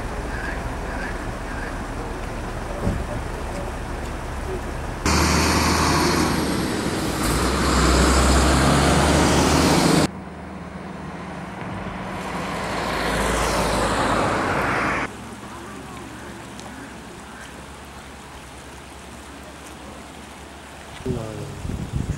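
Road traffic on a highway heard in several cut segments: a loud stretch of heavy rushing noise about five seconds in, then a vehicle passing by, rising and falling, around twelve to fifteen seconds in, and quieter traffic noise after. A voice starts near the end.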